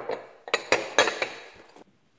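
Kitchenware knocking and clinking as pieces are handled and set down on a table: about five sharp knocks in the first second and a quarter, then fading away.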